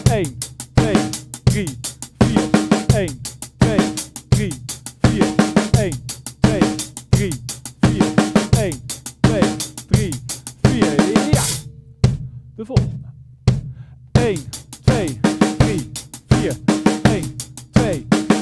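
Acoustic drum kit played in a steady sixteenth-note groove, the hands alternating right-left across hi-hat and snare over the bass drum, with cymbals in the mix. About twelve seconds in the playing stops for two seconds, then starts again.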